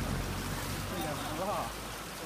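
Fast, shallow river water rushing steadily over a stony riffle, with faint voices in the middle.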